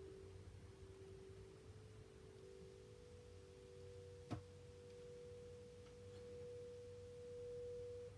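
Faint, steady pure tones: a higher one held throughout and a lower one that fades out after the middle, with a single light click about four seconds in.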